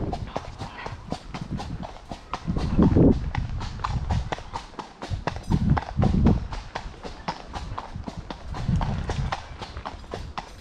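A horse's hooves on a gravel path in a steady, even beat of about four or five hoofbeats a second, with a few low whooshes of wind noise.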